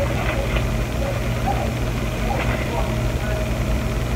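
A steady low hum, with a few faint rustles of paper napkins and plastic being handled.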